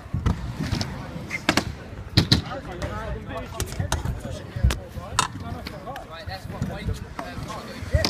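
Stunt scooter riding on a concrete skatepark: its small hard wheels rolling, with a series of sharp knocks and clacks as the wheels and deck hit the ramps and ground.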